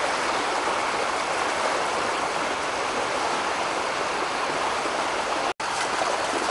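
Floodwater rushing in a swollen stream: a steady hiss of running water, with a brief break near the end.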